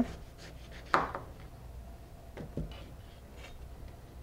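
A large chef's knife cutting quietly down through a watermelon half's rind and flesh, with a few faint clicks.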